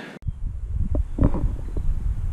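Wind buffeting the microphone: a gusting low rumble that comes in suddenly just after the start.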